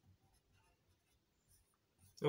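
Near silence, with faint strokes of a marker writing on a whiteboard.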